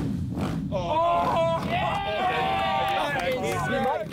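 A dirt bike's engine running with a low, fast pulse. From about a second in, people's drawn-out shouts ride over it.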